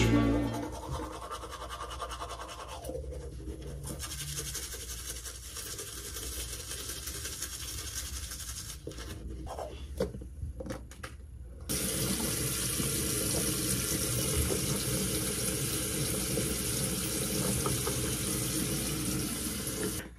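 Teeth being brushed with a toothbrush, a steady scrubbing for the first eight seconds or so. A few knocks and clicks follow, and about twelve seconds in a sink faucet is turned on and runs steadily and louder, then shuts off.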